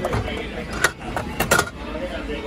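Gachapon capsule-toy machine dispensing: the turned dial clicks and the plastic capsule knocks down into the chute and is taken out. A few sharp plastic clicks and knocks, the loudest a little under a second in and a quick pair about a second and a half in.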